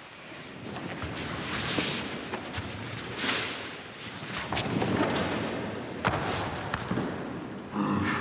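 Two jujutsu practitioners grappling on a matted dojo floor in a sword-disarming throw: continuous rustling of gi and hakama and shuffling feet, with several surges of movement and sharp thuds as the swordsman is taken down to the mat.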